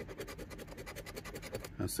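A metal coin scraping the scratch-off coating off a lottery ticket in quick, repeated strokes.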